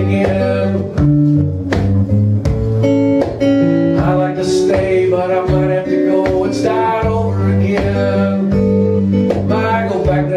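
Acoustic guitar playing a country-folk song.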